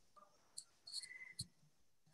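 Near silence, with a few faint, short, high-pitched chirps, one of them a brief steady tone about a second in.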